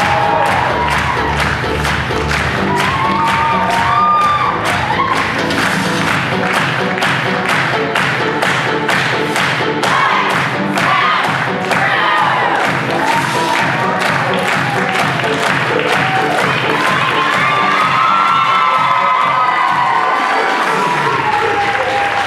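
Audience cheering and whooping over music with a steady beat, as a cast takes its curtain-call bows.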